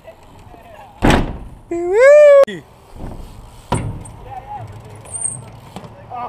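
A BMX bike hits the concrete with a sharp thump about a second in, then a rider lets out a loud, wordless yell that rises and holds before breaking off. A second, lighter thump from the bike follows near four seconds.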